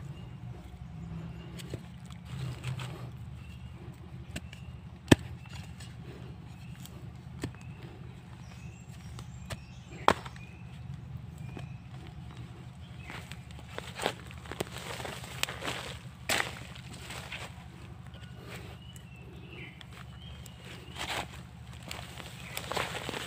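Machete chopping at the roots of a bonsai stock: two sharp chops about five seconds apart, with a few lighter knocks. Later come bursts of rustling and scraping, all over a steady low hum.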